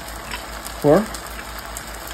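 Metal spoon stirring a thin soy and honey sauce in a glass bowl, giving a few faint clinks against the glass over a steady hiss.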